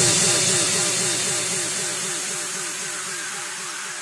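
The fading tail of an electronic dance track after the beat has stopped: a low synth pulse repeating about five times a second under a high hiss, dying away steadily.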